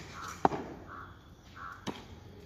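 A crow caws three times in short harsh calls. Two sharp knocks fall between them, the first about half a second in and the loudest, from wooden drill rifles being handled in rifle drill.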